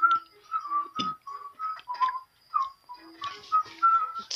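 Whistling: a quick run of about a dozen short, clear notes hopping between a few nearby pitches, with a light click about a second in.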